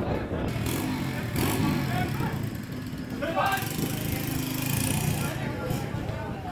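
Shouts of players and spectators on an outdoor football pitch during open play, over a steady low drone.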